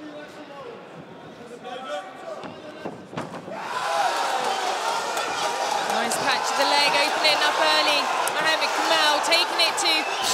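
Arena crowd at a kickboxing fight: a low murmur of voices, then about four seconds in the crowd breaks into loud shouting and cheering at an exchange of punches, with a few sharp knocks among the noise.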